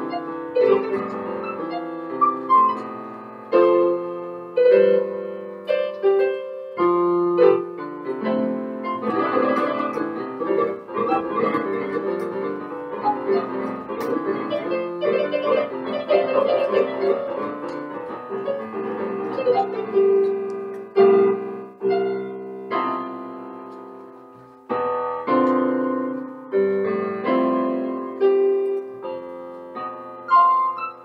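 Electric piano played with a grand-piano tone, both hands sounding chords and a melody with struck notes that ring and die away. Near the end a phrase fades almost to nothing, and a loud chord then starts the next phrase.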